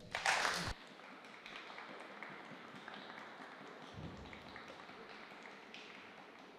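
A brief loud rush of noise, then faint, scattered applause from a small audience at the end of a talk.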